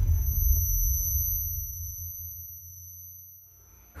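Aftermath of an explosion in film sound design: a deep rumble dying away over a few seconds under a steady high-pitched ringing, the ear-ringing effect of a blast. The sound cuts off suddenly at the end.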